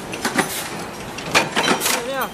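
Steady machine noise with sharp metal knocks and clanks at irregular intervals, the loudest of them in the second half, from a punch press stamping steel bed-lift parts.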